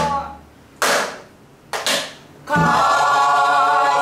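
Buk, the Korean barrel drum of pansori, struck with a stick: a sharp stroke about a second in and a quick double stroke near two seconds, each ringing briefly. Pansori singing resumes at about two and a half seconds.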